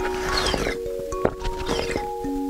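A loud slurp of liquid sucked from a glass test tube, falling in pitch over the first second, followed by a couple of short gulps or clicks. Chiming mallet-percussion background music plays throughout.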